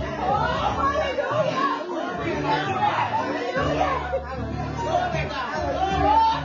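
Several people talking at once in a large room, over soft background music with held low notes.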